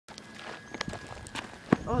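Footsteps on a gravel path: scattered short scuffs and clicks, with one sharper knock near the end.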